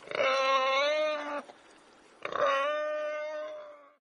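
Warthog giving two long, steady-pitched moaning calls, each starting with a rough burst; the first lasts about a second and a half, and the second, beginning about two seconds in, fades out at the end.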